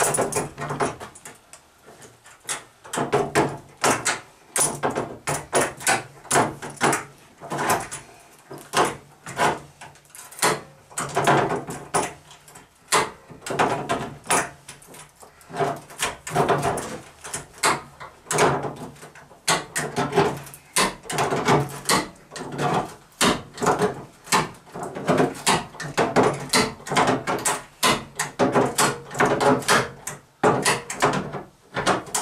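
Thin sheet-metal car body panels of a cut-down Toyota Tercel knocking and rattling under hand work as trim is fitted onto the cut edge: an irregular run of clunks and clatters, several a second.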